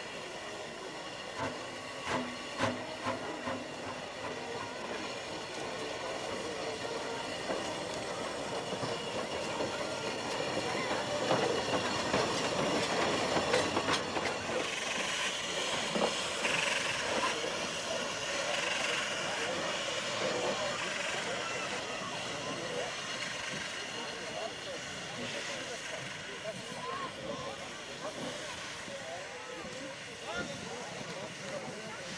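Narrow-gauge steam locomotive Mh.6 running slowly past, its wheels clicking over the rails and its steam hissing. The sound is loudest about halfway through, as it draws near.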